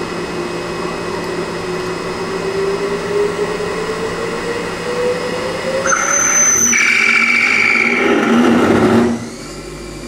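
CNC lathe spindle running with a whine that rises steadily in pitch, then from about six seconds in a loud cutting noise with high ringing tones as the blade parts off the end of the steel piston blank, cutting off abruptly about nine seconds in and leaving the machine's lower hum.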